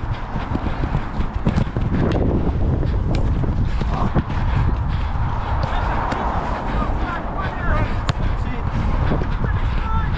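Footsteps of a player running on artificial turf, with ball touches, over heavy wind rumble on a body-worn microphone. Players' voices call out briefly near the end.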